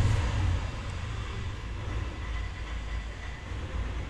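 A steady low background rumble with a faint even hiss above it.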